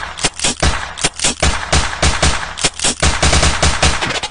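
Machine-gun gunfire sound effect in a dance track: a rapid volley of sharp shots, several a second.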